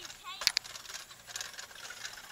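Light metallic clicks and clinks, the sharpest about half a second in, with a faint voice at the start.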